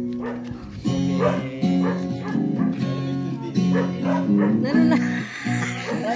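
Acoustic guitar strummed in a steady rhythmic chord pattern for a birthday serenade, with a dog barking at times over it.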